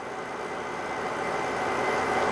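Steady running noise of the still's recirculating water chiller, growing a little louder over the two seconds, with a faint steady tone on top.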